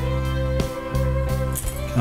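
Background music led by guitar: held notes with a few plucked notes struck over them.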